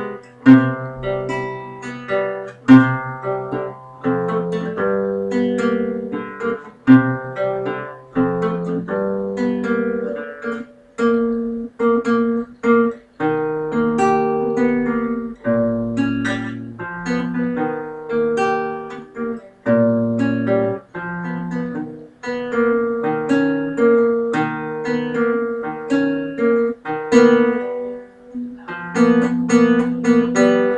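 Classical guitar played fingerstyle: a continuous run of plucked notes, a melody over held bass notes, from a piece being practised.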